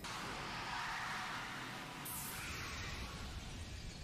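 Cartoon sound effect of a car speeding: a faint, steady rushing noise with no distinct engine note.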